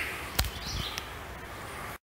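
Quiet woodland ambience with a faint steady hiss, a single sharp knock about half a second in, and a short high bird call just after it; the sound cuts out at the end.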